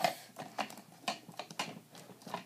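Light, irregular clicks and taps, several a second, of small objects being handled as an X-Acto craft knife and its cover are put away in a case.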